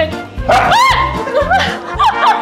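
Upbeat background music with a steady beat. Over it, a dog gives a loud, high yelp that rises and falls, about half a second in, followed by a few shorter high cries.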